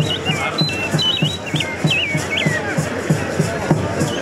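Music with a steady drum beat of about three beats a second. In the first two and a half seconds a high, whistle-like melody of short stepped and gliding notes plays over it.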